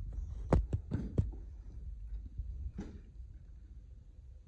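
A quiet pause over a low steady rumble, broken by a quick cluster of about four sharp knocks or clicks in the first second or so and one fainter knock near three seconds.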